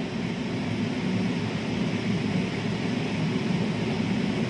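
Steady low background hum, even throughout, with no distinct knocks or clicks.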